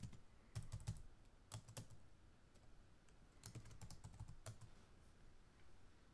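Faint computer keyboard typing: scattered key clicks in short runs, about half a second in, again near two seconds, and a longer run past three seconds.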